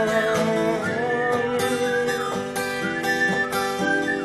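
Acoustic guitar playing chords, the notes held and ringing.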